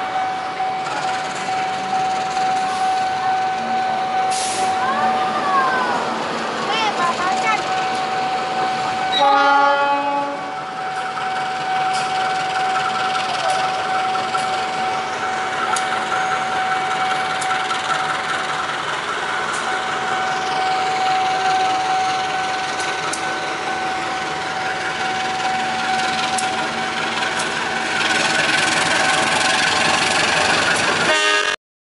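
KAI CC 201 diesel-electric locomotive approaching with its train, sounding its horn in one blast about nine seconds in. A steady high tone runs throughout, and the engine and rolling noise grow louder near the end as the train draws close.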